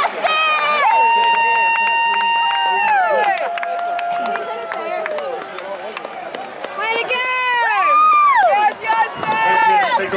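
A spectator close to the microphone cheering in a high-pitched voice: two long, held shouts in the first half, then a run of shorter whoops that rise and fall.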